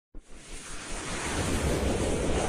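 Whoosh sound effect of a news channel's animated logo intro: a rushing noise that starts just after the beginning and swells steadily louder.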